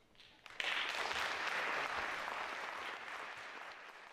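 Audience applause breaks out about half a second in, then holds and slowly tapers off.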